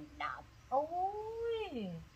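A short syllable, then one long drawn-out cry that rises, holds and then slides down in pitch over more than a second.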